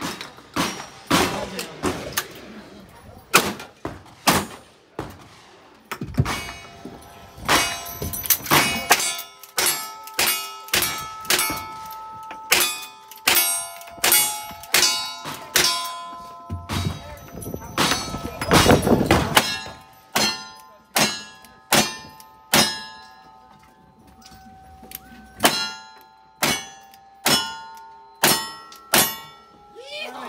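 Rapid gunfire from a double-barrel shotgun and a lever-action rifle. Many shots are followed by the ringing of struck steel targets. The run ends clean, with every target hit.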